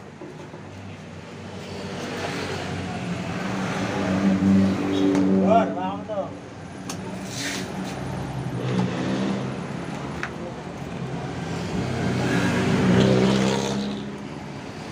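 Motorcycle engine running, its revs and loudness climbing over several seconds, dropping off about halfway through, then climbing again near the end.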